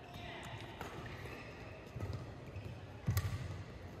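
Badminton rally in a large hall: faint, echoing racket strikes on the shuttlecock, the sharpest about three seconds in, with lighter knocks before it.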